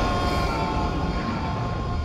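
Trailer soundtrack: a sustained drone of several steady tones over a low rumble, the tones fading near the end.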